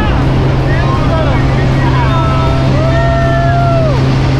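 Small propeller airplane's engine drone heard inside the cabin, loud and steady with a constant low hum.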